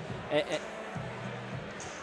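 A lull in the broadcast audio: a brief, faint voice about half a second in, over a low steady hum and quiet background noise.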